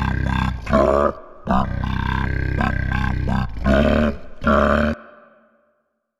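A man's voice making low, rattling nonsense noises in two long stretches, broken by short higher vocal cries, then stopping abruptly about five seconds in.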